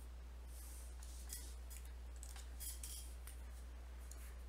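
Faint scratching of a stylus on a writing tablet in a few short strokes, over a low steady hum.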